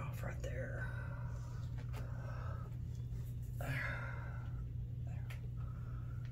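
Quiet, whispered speech over a steady low hum, with a few faint clicks.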